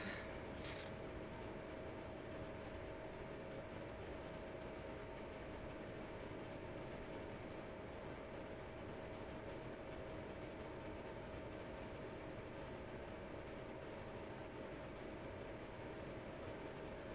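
Quiet room tone: a steady low hiss and hum with a faint constant tone, and one brief click just under a second in.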